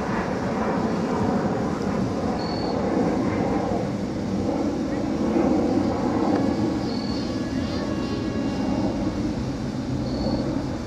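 Air Hogs AeroAce electric RC plane's propeller motor buzzing in flight, heard under a steady rumbling noise that swells about halfway through. Short high beeps recur every few seconds.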